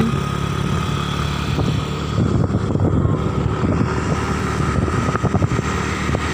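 Motorcycle engine running as it rides along a road, an uneven rumble.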